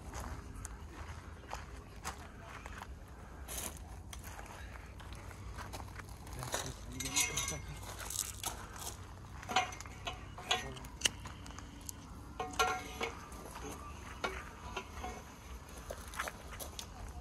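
Scattered metal clinks and knocks of steel parts being handled as a gearbox clamp and a long steel lever pipe are fitted to a screw pile, busiest in the middle, over a steady low background rumble.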